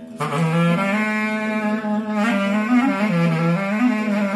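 Clarinet playing an ornamented Greek folk melody line, with many quick bends and trills, over acoustic guitar accompaniment. The clarinet comes in sharply just after the start.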